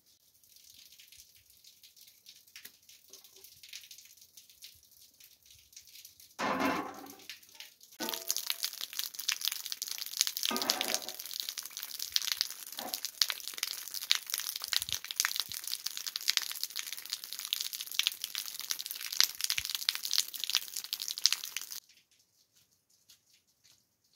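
Water running and splashing as vegetables are rinsed in a stone basin: a dense, crackling hiss of water that starts suddenly about eight seconds in and stops abruptly just before the end. A louder, shorter splash comes about six and a half seconds in.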